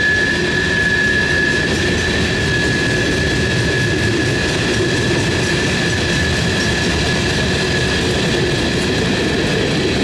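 Freight cars (tank cars and a flatcar) rolling steadily past on the rails: a continuous loud rumble of steel wheels on track. A steady high-pitched squeal from the wheels runs through it.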